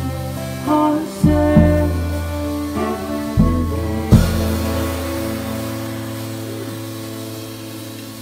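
Live folk-rock band of electric guitar, acoustic guitar, fiddle and drums ending a song with a few accented hits. The last one comes about four seconds in, and the final chord then rings out and slowly fades.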